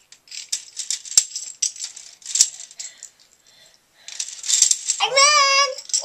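Plastic Connect Four discs clicking and clattering as they are dropped in quick succession into the upright plastic grid, with a short lull partway through. About five seconds in a young child gives a long, high-pitched shout.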